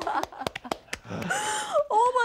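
A few separate hand claps, then a woman's breathy, emotional drawn-out "oh" that drops in pitch at the end: an overwhelmed reaction, close to tears.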